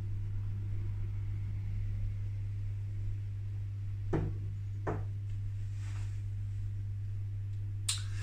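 A man drinking beer from a glass tankard, quiet apart from two short sounds about four and five seconds in as the glass comes away from his mouth, over a steady low hum.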